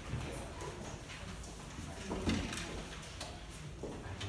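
Classroom room noise: scattered knocks and shuffling of desks and feet, with a louder bump a little past halfway, under faint low voices.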